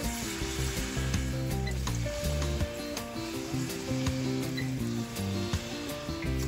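Sukhiyan balls deep-frying in hot oil, a steady sizzle throughout, under background music with held low notes.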